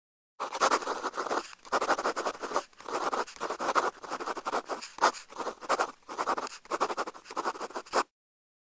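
A pen scratching across paper in a run of writing strokes, each about a second long with short gaps between them.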